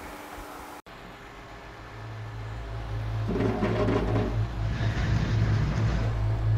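Low, steady diesel engine drone of a grab lorry running, fading in and growing louder after a sudden cut, with a brief higher mechanical tone around the middle.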